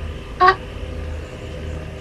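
A woman's short exclamation "ah" about half a second in, over a steady low hum.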